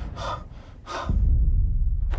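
A woman breathing hard, three breaths about half a second apart, with a low rumble coming in about a second in.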